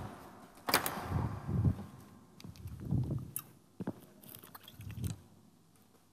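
Stage noises of a performer moving about: a few sharp clicks and knocks among soft low thumps, with quiet gaps between them.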